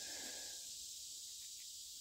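Faint, steady high-pitched drone of insects, with a soft brief rustle in the first half-second.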